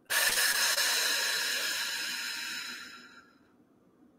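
A woman's long exhale through pursed lips, a breathy hiss that starts sharply and fades out over about three seconds: the slow out-breath of a paced breathing exercise, blown out like blowing out birthday candles.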